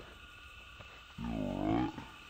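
A young man groaning in pain after a hard skateboarding slam. One drawn-out groan a little over a second in, dipping and then rising in pitch.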